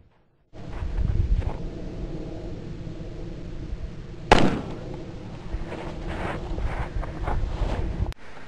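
A single loud 9mm pistol shot about four seconds in: one sharp crack with a short ringing echo, over a low steady background hum.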